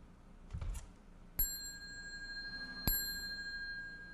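A small metal Buddhist ritual bell struck twice, about a second and a half apart, each strike ringing on with a clear high tone. A soft knock comes just before the first strike.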